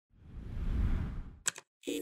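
Channel logo sting sound design: a low rumbling whoosh swells and fades, then two quick sharp clicks and a brief silence before a sustained, chime-like chord sets in near the end.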